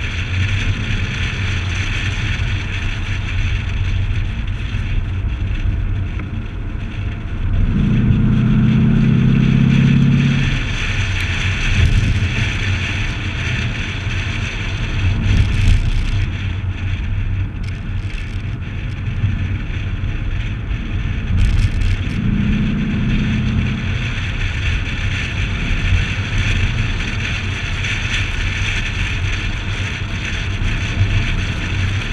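Wind buffeting a hood-mounted camera's microphone over the rumble of a C6 Corvette's V8 and its tyres on the road. The engine note swells louder for about two and a half seconds about eight seconds in, and again briefly at about twenty-two seconds.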